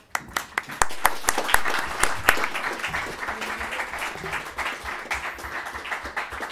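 Audience applauding: many hands clapping, starting suddenly and easing off somewhat after the first couple of seconds.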